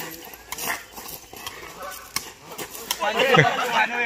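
A small kick ball struck by feet a few times, sharp taps in the first half. About three seconds in, a burst of loud, excited men's voices.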